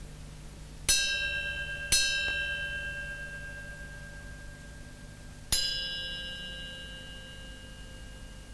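Three struck bell tones in the musical score, about a second apart and then one more a few seconds later, each ringing out slowly with bright, high overtones.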